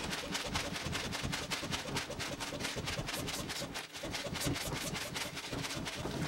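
Small hand transfer pump worked rapidly, pushing nitrous oxide gas into a pressurised plastic soda bottle. It makes a steady train of short pulses, about five a second, with a brief break about four seconds in.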